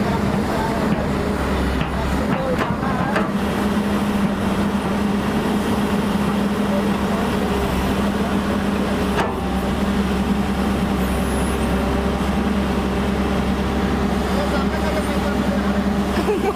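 Hyundai 210 crawler excavator's diesel engine running steadily under load while the bucket digs soil, with one sharp knock about nine seconds in.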